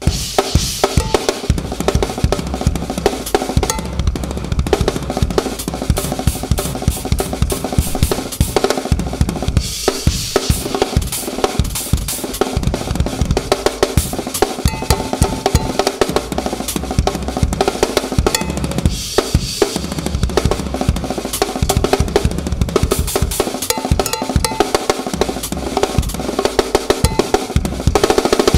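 An acoustic drum kit played solo at high speed: dense snare and bass drum strokes with cymbals, in very fast grooves that lean on the left foot. Brighter cymbal-heavy stretches come about a third of the way in and again near the end.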